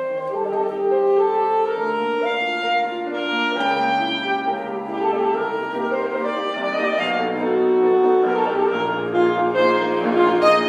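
Alto saxophone playing a melody of held notes that change pitch every second or so, with piano accompaniment.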